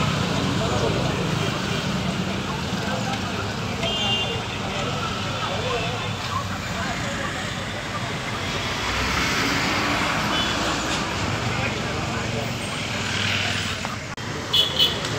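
Street traffic noise, with motor scooters and vehicles passing, and indistinct voices of a crowd in the background. A couple of brief high beeps sound about four seconds in and again after ten seconds.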